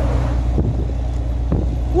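Volvo NH 380 truck's diesel engine running steadily at cruising speed, heard from inside the cab as a constant low drone. At the start an oncoming truck rushes past and the whoosh fades within half a second.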